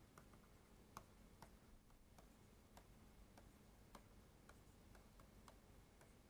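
Near silence with faint, irregular clicks of a stylus tapping on a tablet screen as an equation is handwritten.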